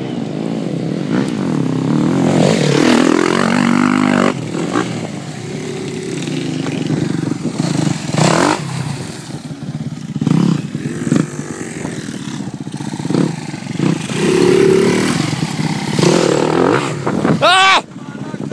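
KTM 250 SX-F motocross bike's single-cylinder four-stroke engine being ridden, revving up and down again and again with its pitch rising and falling as the throttle is worked.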